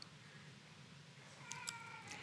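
Near silence: quiet room tone, with a faint brief pitched sound and a couple of light clicks near the end.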